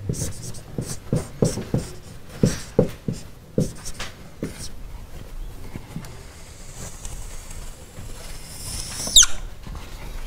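Whiteboard marker writing on the board: a quick run of short strokes and taps, then a longer drawn stroke with a high hiss that ends in a sharp squeak falling in pitch, about nine seconds in. The marker is running dry.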